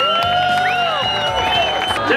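Background music under a cheering crowd, with long drawn-out whoops that rise and fall.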